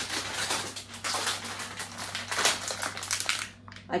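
Plastic wrapper of an ice-pole multipack crinkling and rustling as it is handled and picked up, dying away shortly before the end.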